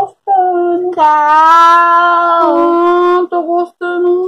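A female voice singing without words, holding one long note for about two seconds, with shorter notes before and after.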